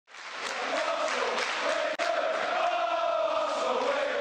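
A large football crowd singing a chant in unison, many voices holding long drawn-out notes. It cuts out for an instant about two seconds in.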